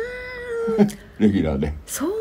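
A person's voice: a drawn-out exclamation that rises in pitch and is held for about a second, then a short stretch of talk, then another long rise-and-fall drawn-out sound near the end.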